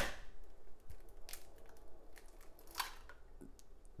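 A hen's egg cracked one-handed: one sharp knock as the egg strikes the countertop at the very start, then a few faint clicks and crackles as the shell is pulled apart over a plastic bowl.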